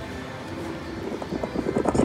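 Cats Hats and More Bats video slot machine sound effects: a rapid run of clicks, about eight to ten a second, building in loudness through the second half as the bonus bat symbols land and the free-games feature is triggered.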